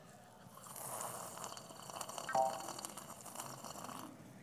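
Sipping from a coffee cup, with faint mouth and liquid sounds over low room noise, and a brief short voiced sound a little past halfway.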